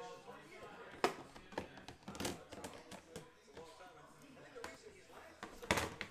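Low voices in the background, broken by a few sharp handling clicks and knocks, the loudest near the end.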